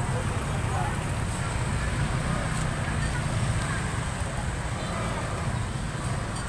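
Busy street ambience: a steady rumble of motorcycle engines with people talking in the background.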